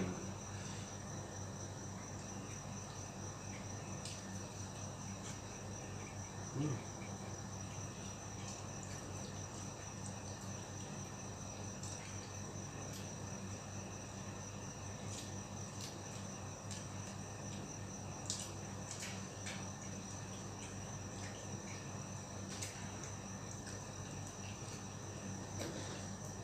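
A steady, high-pitched insect trill over a low steady hum. Occasional faint clicks and taps come from eating by hand from a metal plate, with a soft thump about seven seconds in.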